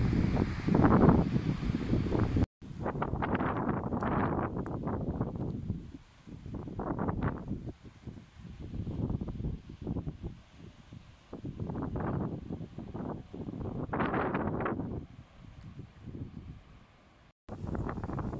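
Gusty wind buffeting the microphone and rustling through blossoming cherry trees, rising and fading in swells every second or two, with two brief dropouts.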